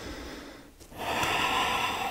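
A woman breathing deeply and audibly in a yoga squat: a softer breath, a brief pause, then a louder, longer breath starting about a second in.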